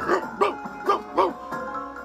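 A dog barking four times in two quick pairs, short high barks over light background music.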